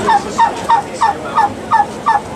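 A tom turkey gobbling: a rapid run of short, falling notes, about three a second.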